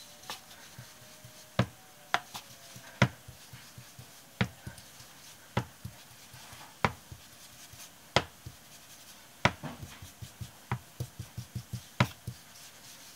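Ink blending tool dabbing brown ink onto paper edges on a desk: sharp taps about once a second, then a run of quicker, lighter taps near the end.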